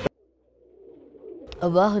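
A song cuts off abruptly. After a moment of near silence, domestic pigeons coo faintly and low, and a man's voice breaks in near the end.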